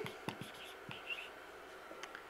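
Dry-erase marker writing on a whiteboard: faint light taps and brief squeaky strokes as a word is written.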